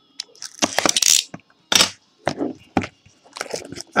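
Plastic wrapping torn and crinkled while a sealed box of baseball cards is opened, in a string of irregular crackling bursts.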